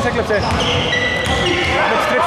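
A basketball being dribbled on a hardwood court, its bounces echoing in the hall, with a high squeak about half a second in lasting about a second.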